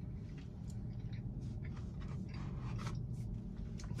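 Faint chewing of a soft frosted cookie, with small crunches and mouth clicks over a low steady hum.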